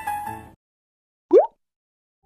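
Piano background music ending about half a second in, then dead silence broken a little over a second in by a single short 'bloop' sound effect that rises quickly in pitch.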